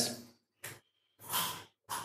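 A man's breath between phrases: a short mouth click, then an audible breath about a second in, with the tail of his speech fading at the start.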